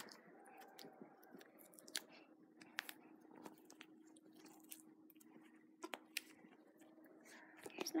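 Faint, scattered small clicks and crackles of a rabbit's skin being worked loose from the hind leg by hand, over a faint steady hum.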